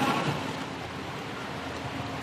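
Steady hiss of background room noise with no speech. The last word's echo fades away in the first half-second.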